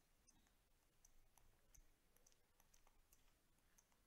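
Near silence, with faint scattered clicks of a stylus tapping and writing on a tablet screen.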